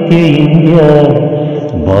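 Malayalam patriotic poem recited in a chanting, sung style: one voice held in long notes that waver in pitch, with musical backing. A deep low note comes in near the end.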